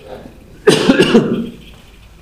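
A man coughs into his fist: one short, loud burst about two-thirds of a second in.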